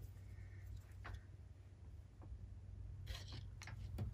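Quiet room tone with a few faint taps and clicks from paintbrushes and craft supplies being handled and set down on a cloth-covered table, a few more of them near the end.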